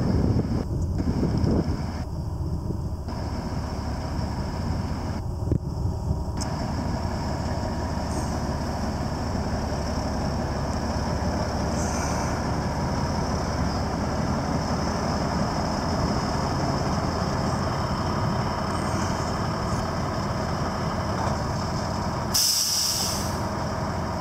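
Detroit Diesel 12.7-litre Series 60 inline-six in an International 9400 semi tractor, running steadily as the bobtail tractor drives slowly around the yard. Near the end comes a short, sharp air hiss as the air brakes are set.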